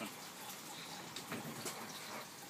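Steady trickle of water running into the grow bed of an IBC flood-and-drain aquaponics system as the bed fills.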